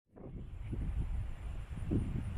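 Wind buffeting the microphone outdoors: an uneven low rumble with irregular gusts, starting just after the beginning.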